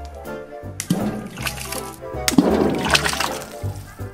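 Splashing over background music: a soft tomato dropped from a height hits a wet newspaper floating on a tub of water and tears through it into the water. There is a short splash just before a second in and a longer one in the second half.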